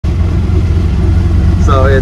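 Auto-rickshaw ride heard from the passenger seat: a loud, steady low rumble of engine and road noise. A man's voice starts near the end.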